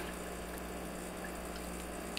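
Bezzera BZ10 espresso machine's vibratory pump humming steadily during a shot, with espresso streaming from a bottomless portafilter into a glass.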